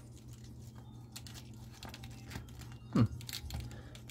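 Faint clicks and rustles of a plastic action figure being handled and its joints worked, over a steady low hum. A short hummed "hmm" comes about three seconds in.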